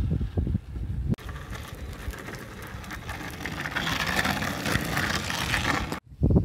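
Wind buffets the microphone for about the first second. Then a vehicle's tyre noise on the street grows louder as a steady hiss, strongest near the end.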